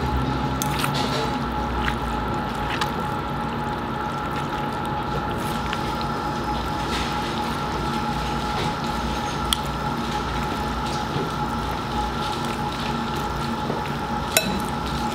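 Chopsticks and a spoon tossing sauce-coated wide wheat noodles in a ceramic bowl: wet squishing, with scattered light clicks against the bowl, over a steady background hum with two constant whining tones.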